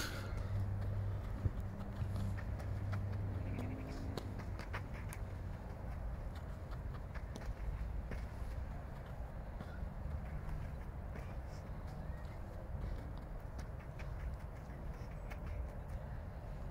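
Faint footfalls and light taps of a child doing a footwork drill, scattered and irregular, over a low steady hum.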